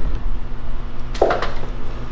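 A steady low hum, with a short breathy burst of noise a little over a second in.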